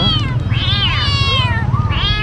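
Caged kittens meowing: a short high meow, then a long drawn-out meow that rises and falls.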